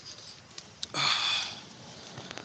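A short sniff close to the microphone about a second in, a hiss lasting about half a second, just after a faint click.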